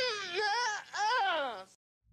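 A high, wavering vocal cry that slides up and down in pitch in two phrases, then cuts off suddenly, leaving silence.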